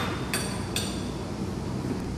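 Two light clinks of kitchenware being handled on a counter, about half a second apart, each with a brief ring, over a steady low room hum.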